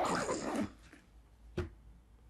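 Backpack zipper being pulled shut, the zipping ending within the first second, followed by a single soft knock about a second and a half in.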